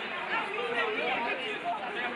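Several people chatting at once, with overlapping voices and no one clear speaker.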